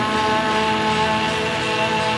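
Electric guitar playing a steady, dense, droning chord with a thick wash of noise over it; several notes are held level.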